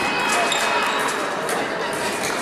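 Echoing background of a large indoor sports hall: indistinct voices and scattered thuds of footwork on the fencing pistes.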